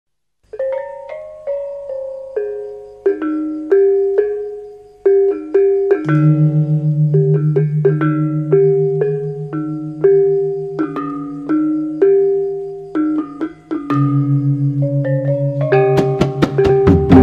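Background music: a melody of struck mallet-percussion notes that ring and fade, joined about six seconds in by a pulsing bass line.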